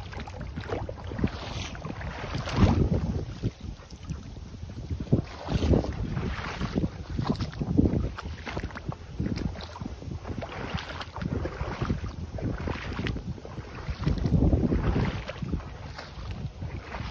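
Feet wading through a shallow puddle, splashing and sloshing in irregular surges every second or two, with wind buffeting the microphone.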